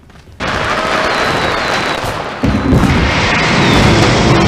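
Fireworks crackling densely. About two and a half seconds in, louder deep booms join.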